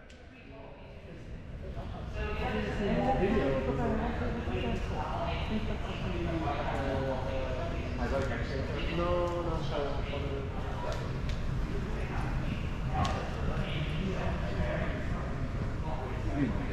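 Background chatter of museum visitors talking in a large hall, fading in over the first two seconds, with a few sharp clicks.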